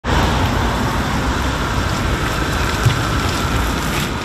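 Street traffic: a van and cars driving along a town road, giving a steady rush of tyre and engine noise.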